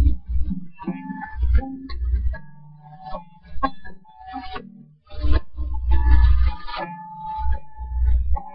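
A guitar being played: strummed chords over low bass notes, the instrumental intro before the singing, with a short lull about halfway through.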